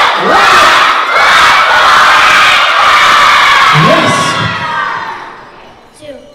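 A large crowd of schoolchildren shouting and cheering together, loud and sustained, then dying away over the last second or so.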